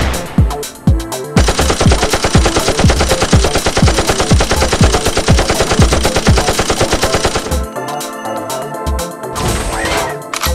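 Rapid machine-gun-style gunfire sound effect, a dense run of shots from about a second and a half in until near the end, laid over music with a steady kick-drum beat.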